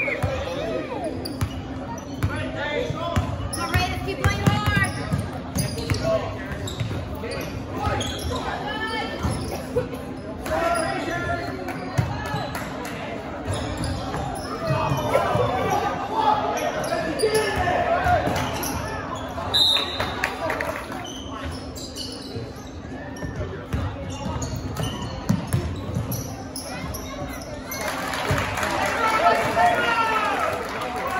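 A basketball being dribbled on a hardwood gym floor during a game, with repeated bouncing thuds and people's voices echoing around the gym.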